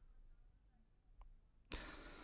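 Near silence: room tone, with one faint tick a little past a second in and a soft hiss coming in near the end.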